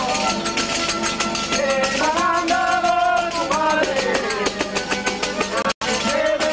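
Traditional Murcian cuadrilla folk band playing: violins and strummed guitars in a fast, even rhythm, with a held melodic line from about two to three and a half seconds in. The sound cuts out for an instant near the end.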